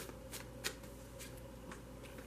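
Tarot cards handled in the hand: about five soft card clicks, the sharpest a little over half a second in, as a card is drawn from the deck and laid on the velvet tablecloth.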